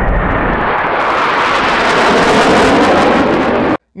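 Loud jet aircraft noise, as of a jet passing overhead: a deep rumble that brightens into a harsher hiss after about a second, then cuts off suddenly near the end.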